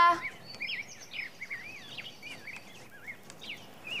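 Birds chirping: a steady scatter of short, high chirps that rise and fall, several each second.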